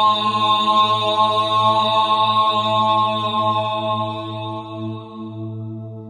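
A deep male voice holding one long chanted "Om" over a steady low drone, the voice fading away in the last couple of seconds and leaving the drone.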